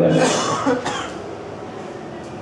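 A man coughs into a close microphone, with two quick noisy bursts in the first second.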